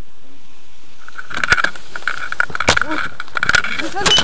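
Wind buffeting a harness-mounted camera's microphone. From about a second in come rustling and several sharp knocks of harness gear and clothing as a tandem paraglider pair starts the launch run, with a brief voice near the end.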